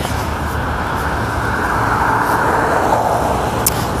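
Steady road traffic noise from a busy multi-lane highway, cars rushing past, swelling a little in the middle.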